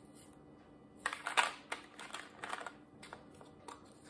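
Hands handling small plastic bags and containers of diamond painting drills: a cluster of light plastic clicks and rustles about a second in, then a few softer clicks and ticks.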